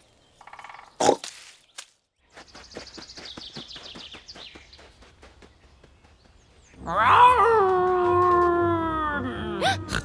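A cartoon wolf howl: one long call of about three seconds that falls slowly in pitch, coming after a few seconds of faint rustling and light ticks.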